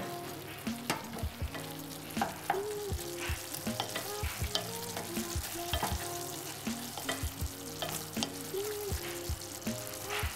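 Sliced green tomatoes frying in oil in a stainless steel saucepan. A wooden spoon stirs them, knocking and scraping irregularly against the pan over a steady sizzle.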